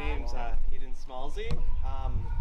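People's voices in short bursts, with a steady low rumble underneath and one sharp knock about one and a half seconds in.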